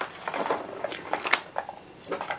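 Rustling and a scatter of light clicks and taps as paper-crafting supplies are handled on a desk.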